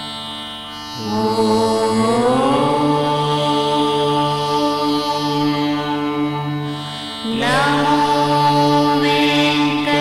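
Carnatic-style devotional music: a melodic line over a steady drone. The melody enters with a rising glide about a second in, and again after about seven seconds.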